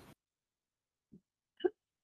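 Dead silence from the video call's gated audio, broken near the end by one short vocal sound just before speech begins.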